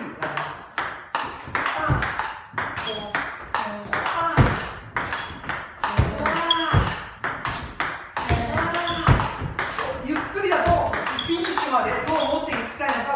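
A fast table tennis rally, the celluloid ball struck back and forth with rubber-faced paddles and bouncing on the table. It sounds as a quick, irregular run of sharp pocks, a forehand drive answered by a counter-drive again and again.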